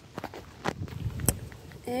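Footsteps crunching on pine-straw mulch: a few sharp steps about half a second apart.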